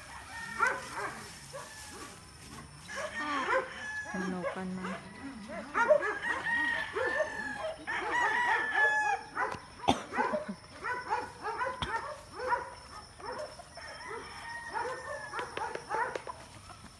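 Several gamecocks crowing over one another, their calls overlapping one after another throughout.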